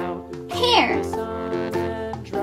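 Children's background music with a plucked ukulele, and a single high sliding sound that falls steeply in pitch about half a second in.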